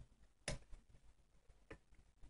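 A few faint, sharp clicks of metal tweezers working at the candle to pull out the ring packet: one clear click about half a second in and a softer one later.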